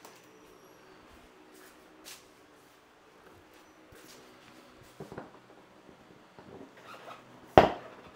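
Quiet handling of a motorcycle seat being fitted back on: a faint click about two seconds in, light knocks later, and a sharp knock near the end, over a faint steady hum.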